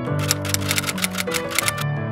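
Background music with held notes, overlaid by a quick run of typewriter-key clicks, about seven or eight a second, that stop shortly before the end: an editing sound effect as on-screen text types itself out.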